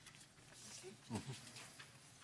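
Hushed meeting room with a few faint rustles, and a single spoken "Okay" about a second in.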